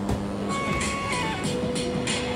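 Loudspeaker of a light-triggered interactive sound installation playing electronic musical tones. From about half a second in, held notes step down in pitch, over a steady low hum.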